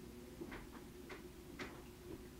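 Faint sharp clicks, three of them about half a second apart, over a steady low hum.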